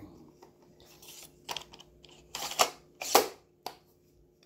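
A pink cardboard makeup palette box being handled and opened: a handful of short clicks and scuffs, the loudest about three seconds in.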